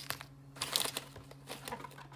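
Foil wrappers of Pokémon Lost Origin booster packs crinkling as a stack of packs is lifted and set down, in two short rustles within the first second, over a faint steady low hum.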